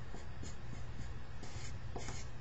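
Felt-tip marker writing on paper: a few short strokes, then a longer stroke in the second half as the answer is circled.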